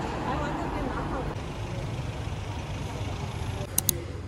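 City street traffic: cars passing at low speed, with indistinct voices in the first second or so. Two sharp clicks come close together near the end.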